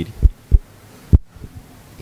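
Three short, dull low thumps: two about a third of a second apart early on, then a third a little after one second.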